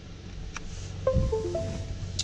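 A USB cable plugged into a laptop: a faint click, a thump of handling, then the short Windows chime of a few stepped notes that signals a device has been connected.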